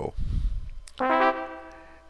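A single synthesized note from the NetLogo sound extension starts about a second in and fades away. It is the sonic signal that the turtle has stepped onto a green patch.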